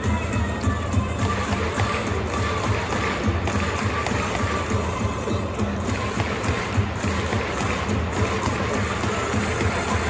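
Music playing through a domed baseball stadium over steady crowd noise.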